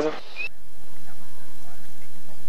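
A man's voice finishing a word right at the start, then a faint steady hiss with a few faint thin steady tones, the background of a light aircraft's cockpit headset intercom.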